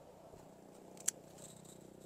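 Scissors snipping through a grape bunch's stem: one sharp snip about a second in.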